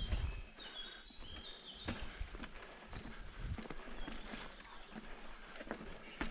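Mountain bike rolling over rough stone slabs and steps, picked up by a helmet-mounted action camera: tyres knock and the bike rattles in irregular thuds and clicks. A few short high chirps sound in the first two seconds.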